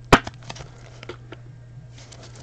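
A single sharp snap of a rigid plastic card holder closing on a trading card just after the start, followed by a few faint taps of handling, over a low steady hum.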